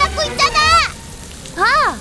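A high, cartoon-style voice shouting the end of an angry line, then a drawn-out exclamation that rises and falls in pitch near the end, over the hiss of rain.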